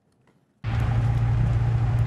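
Brief near silence, then about half a second in a loud, steady rushing noise with a low rumble starts suddenly: a large fire burning a house.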